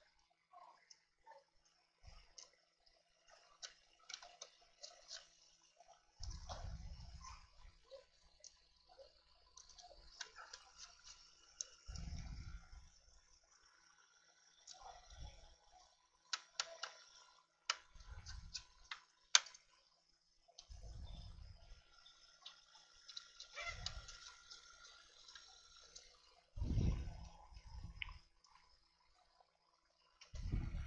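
Small screws being driven by hand into a laptop's plastic case with a screwdriver: scattered light clicks and ticks, with soft low bumps of handling every few seconds.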